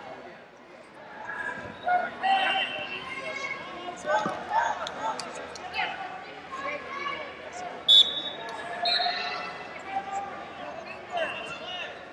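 Wrestling arena sound: voices and shouts echo around a large hall, with scattered thuds and slaps from the mats. A sharp crack comes about eight seconds in, followed by a short high whistle, the referee starting the bout.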